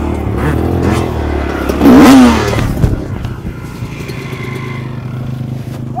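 Four-stroke dirt bike engine revving, rising hard about two seconds in, then dropping to a steady idle.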